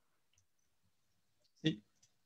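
A few faint, scattered clicks from someone working a computer, in a quiet room, followed by one short spoken word.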